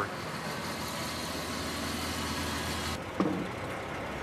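A heavy vehicle's engine running steadily with a low hum. The sound changes abruptly about three seconds in, followed by a brief call.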